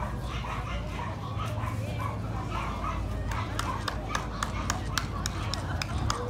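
A dog barking now and then over background chatter, with a quick run of sharp taps in the second half.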